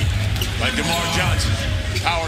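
A basketball bouncing on a hardwood court, amid voices and crowd noise in the arena.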